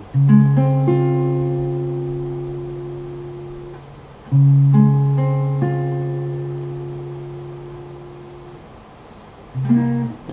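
Acoustic guitar playing a C-sharp major 7 chord twice. Each time the notes are plucked one after another from the bass upward, then left to ring and fade over about four seconds.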